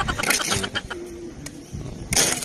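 A steel trowel scraping and tapping wet cement mortar in a metal basin, with a short low coo about a second in.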